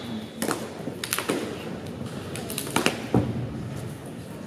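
Several sharp slaps and thuds at uneven intervals from a group of wushu long fist performers moving in unison: hand strikes, foot stamps and snapping uniforms on a carpeted competition floor.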